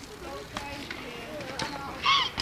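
Faint, distant talking with a few light clicks, over quiet street ambience.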